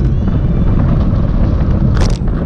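Heavy wind buffeting on an action camera's microphone while riding at speed in a group of road bikes, with a sharp click at the start and another at the end.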